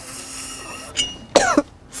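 A man draws air through a glass bong with a steady hiss for about a second, then a small click, and he coughs twice.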